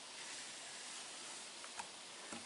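Faint, steady outdoor background hiss with no distinct source, and one light click near the end.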